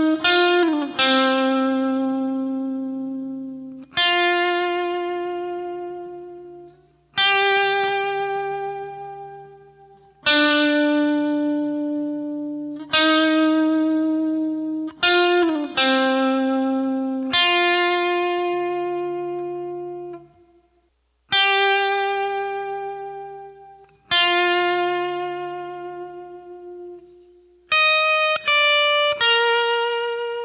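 Epiphone electric guitar playing a slow single-note melody in a clean tone: each note is picked and left to ring and fade for about three seconds, with a short slide down in pitch twice. Near the end comes a quicker run of higher notes.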